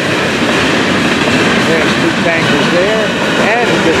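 Empty freight cars, open-top hoppers and then tank cars, rolling past close by: a loud, steady rumble and rattle of steel wheels on rail.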